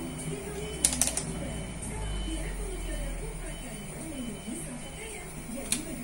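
Faint background voices and music, with a few sharp clicks: a quick cluster about a second in and a single click near the end.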